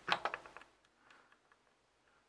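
A few brief clicks from the control knob of an electronic load tester being pressed and turned to set the discharge current.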